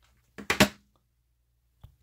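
Handling noise from a plastic-cased Exergen MicroScanner thermometer being put down on a wooden bench. There is a brief sharp knock about half a second in and a faint click near the end.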